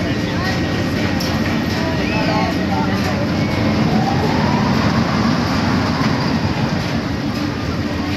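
Carnival midway noise: crowd chatter over a steady hum of ride machinery, with a long whine in the middle that rises and then falls.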